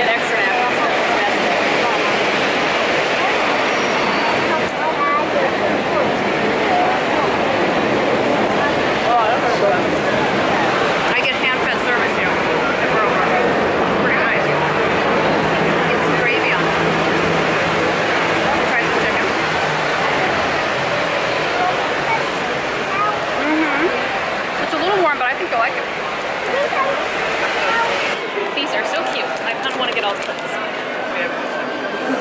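Crowd babble: many people talking at once in a steady, busy din, with no one voice standing out.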